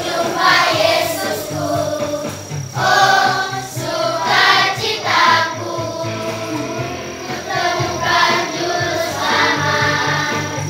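Children's choir singing an Indonesian Christmas song together, with musical accompaniment and a steady bass line underneath.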